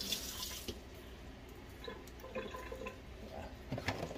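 Kitchen tap running onto hands being rinsed under it, shut off about a second in. It is followed by faint handling sounds and a couple of sharp knocks near the end.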